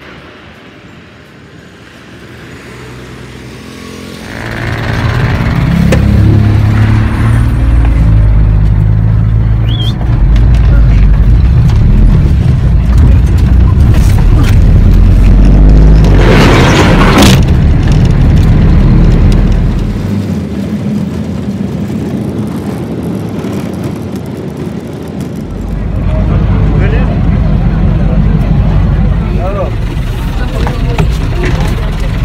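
Ride inside a moving matatu minibus: a loud, steady low rumble of engine and road noise that starts about four seconds in, with a brief loud rush of noise about halfway through and a quieter stretch after it. Voices are heard now and then over the rumble.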